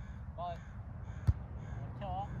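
A volleyball struck once by a player's hands, a single sharp slap about a second and a quarter in, over a steady low wind rumble on the microphone. A short pitched call sounds near the start.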